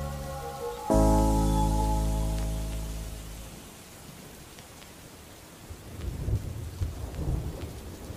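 A sustained music chord that fades away over a couple of seconds, then rain with low, rolling rumbles of thunder.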